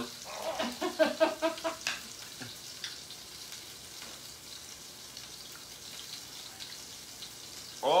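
Burger patties sizzling inside a closed electric contact grill, a steady hiss of frying. Faint talk is heard in the first two seconds.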